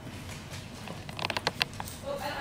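Small fly-tying scissors snipping the spun hair body of a fly: a quick run of several sharp snips a little past the middle.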